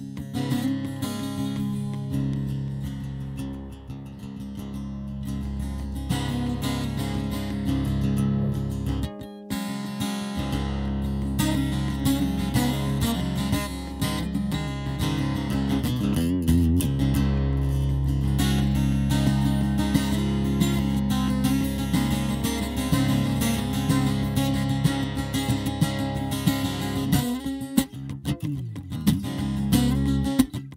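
Nylon-string acoustic-electric guitar played live through a looping pedalboard, with low sustained notes layered under the picking. The sound cuts out briefly about nine seconds in, then resumes fuller.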